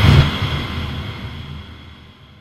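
Sound effect of an animated logo sting: a low rumbling swell with a faint steady high tone, loudest at the start and fading away gradually.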